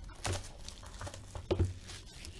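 Plastic shrink-wrap on a sealed trading-card box crinkling as the box is handled, in a few short rustles, the loudest about one and a half seconds in.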